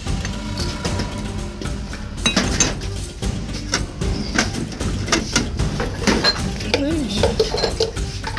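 Ceramic mugs and jars clinking and knocking against each other and the shelf as they are moved around in a cupboard, many short clinks through the whole stretch, over background music.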